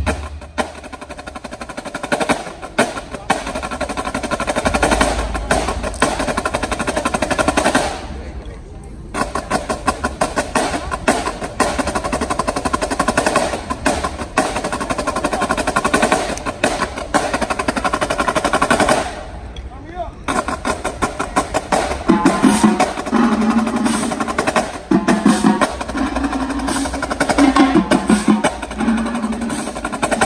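Marching drumline of snare drums, tenor drums and bass drums playing a fast cadence of rapid snare strokes and rolls. It breaks off briefly twice, and in the last third pitched tenor and bass drum notes come to the front.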